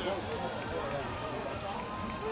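Several voices calling and shouting at once, overlapping, some of them high-pitched.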